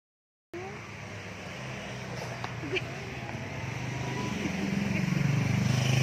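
A motor vehicle's engine running, its low rumble growing steadily louder as it draws near; the sound cuts in abruptly about half a second in.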